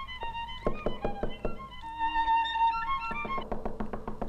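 A violin playing a melody, moving through a string of notes with one longer held high note about halfway through.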